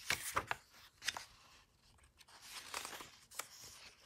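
Pages of a hardcover picture book being turned by hand: paper rustling and flapping with a few light clicks, in two spells, at the start and again past the two-second mark.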